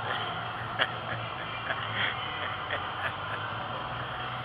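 Indistinct distant voices over the steady background noise of a large exhibition hall, with a few short faint calls or snatches of talk.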